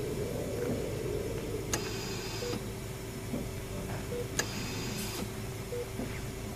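Hospital-machinery sound effect: a steady hum with a held tone, broken every two to three seconds by a sharp click and a short hiss, with faint brief blips between.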